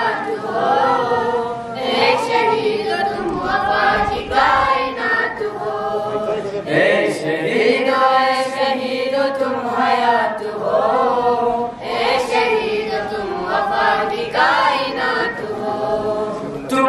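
A group of boys singing a song together at a microphone, in long held notes that bend up and down in pitch.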